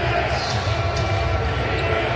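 A basketball bouncing on a hardwood court during live play, over a steady arena crowd murmur with voices.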